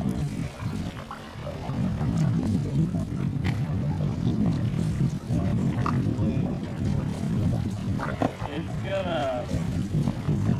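Steady low rumble of wind buffeting the camera microphone, with faint voices near the end.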